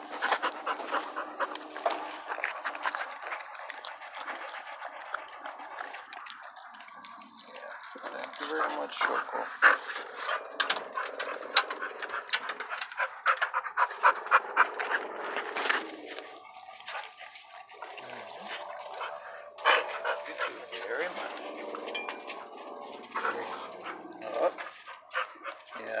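A dog panting quickly and rhythmically close to the microphone, louder through the middle stretch.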